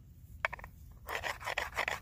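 Hammerstone rasping along the edge of a cow jawbone as the bone is filed down: one short stroke, then a quick run of scraping strokes in the second half.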